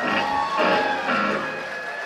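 Amplified electric guitar playing live, notes ringing on over the stage sound.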